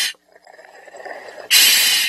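A scuba diver breathing through a regulator, picked up by the microphone in his full-face mask: a loud hiss of breath about one and a half seconds in, lasting about half a second.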